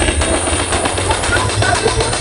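Large carnival sound system playing loud electronic dance music, dominated by a heavy, rumbling bass, with crowd voices mixed in.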